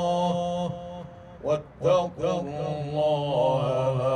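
A man chanting Quran recitation through a microphone, in long drawn-out melodic phrases with a wavering pitch. There is a short break about a second in before a new phrase begins.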